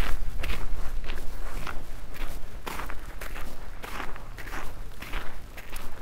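Footsteps crunching on gravel at a steady walking pace, about two steps a second.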